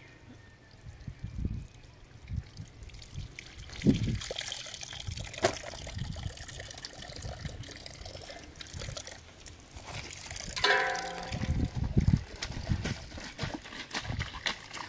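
Water running from a metal tank's tap and trickling over rocks while clothes are rinsed and wrung by hand, with low handling thumps. A short call is heard about ten seconds in.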